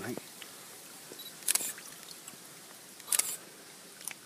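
Two camera shutter clicks, about a second and a half apart.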